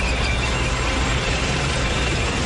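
Cartoon sound effect of a tank's engine and tracks rumbling steadily.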